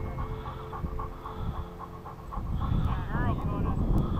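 A hunting dog panting rapidly close to the microphone, about three breaths a second, over a low rumble that grows louder in the second half, with a brief high squeak about three seconds in.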